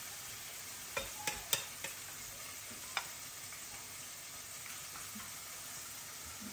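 Hot oil sizzling steadily in a frying pan as saltfish fritter batter fries, with a few sharp clinks of a metal spoon: four close together about a second in and one more about three seconds in.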